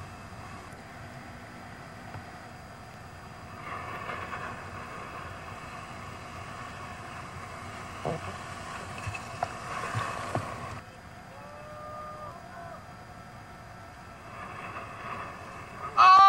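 Muffled rush of surf and water heard through a waterproof camcorder housing held at water level. It swells from about four seconds in and drops off sharply near eleven seconds, with a few knocks of water against the housing along the way. A faint, short distant call follows.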